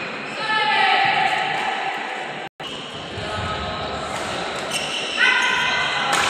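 Badminton rally in a large echoing hall: shoes squeal on the synthetic court mat, twice in long stretches, with sharp racket-on-shuttlecock hits. The sound drops out for an instant about halfway through.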